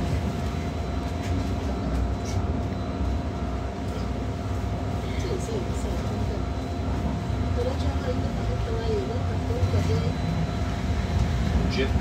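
Cabin sound of a Wright GB Kite Hydroliner hydrogen fuel-cell double-decker bus under way: a steady low rumble from road and running gear, with a thin steady whine on top. Faint voices of other passengers come and go.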